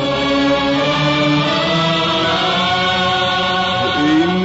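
Arabic tarab ensemble music: a chorus of voices singing steady, held notes over the orchestra.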